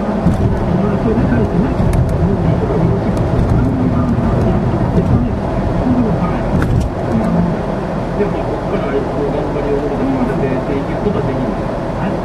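Voices talking continuously over the steady rumble of a car driving at road speed.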